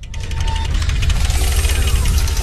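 Loud, dense sound-effect sting accompanying an animated logo ident, heavy in the bass, with a brief steady high tone near the start and a falling sweep partway through.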